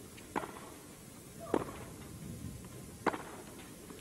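Tennis ball struck by rackets in a baseline rally: three sharp hits, about one and a half seconds apart.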